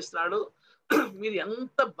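A person's voice speaking, with a short pause about half a second in and a sudden harsh sound about a second in.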